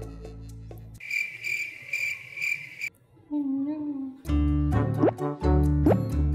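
Cartoon-style cricket-chirp sound effect, a pulsing high chirp for about two seconds, used as an awkward-silence gag. A short wavering tone follows, then playful background music comes back in with rising whistle slides.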